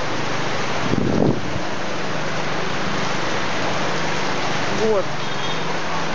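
Heavy tropical downpour, a steady dense hiss of rain. About a second in, a brief louder sound rises over it.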